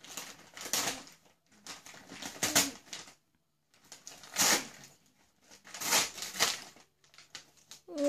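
Gift-wrapping paper being ripped and crinkled by hand as a present is unwrapped, in a run of short rustling tears with a brief pause midway.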